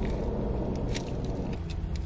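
Steady low car rumble heard from inside a car cabin, with a few faint soft clicks of chewing.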